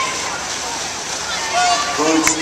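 Steady noisy wash of water splashing from swimmers racing butterfly in a pool, mixed with general poolside noise; a voice cuts in briefly near the end.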